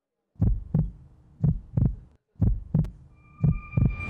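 Heartbeat sound effect: four double thumps, lub-dub, about one pair a second. A thin steady high tone comes in near the end.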